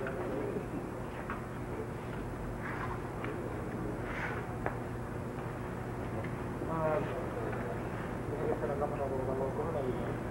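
A person taking a few deep breaths in and out, as if being listened to through a stethoscope, over a steady low hum. Soft murmured voice sounds come in the second half.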